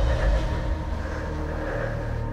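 Film-trailer sound design: a deep low rumble over a sustained held drone. The rumble is loudest at the start and eases off within the first second.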